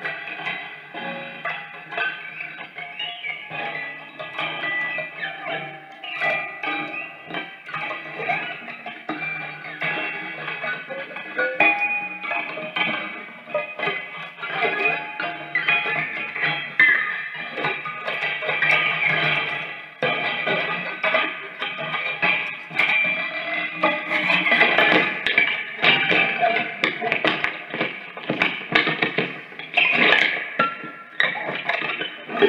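Prepared electric guitar, laid flat with objects on its strings and played through an amplifier: a dense, continuous improvised texture of plucked and struck strings, clicks and ringing tones, busier and louder in the second half.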